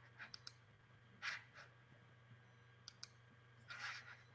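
Near silence: room tone with a low hum and a few faint, scattered clicks and short rustles.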